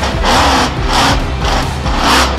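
Loud music track with a heavy beat, a hit landing about every half second over a steady bass.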